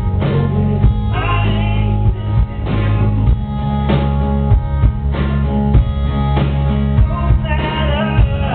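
Live band music: acoustic guitar strumming over a drum kit keeping a steady beat, with a male voice singing at times.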